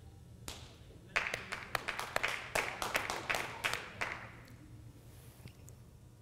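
An audience clapping: a burst of many claps starts about a second in and thins out after about four seconds.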